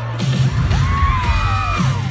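Live band music from a pop concert, with steady low sustained notes, and the arena crowd cheering with high gliding screams from about half a second in.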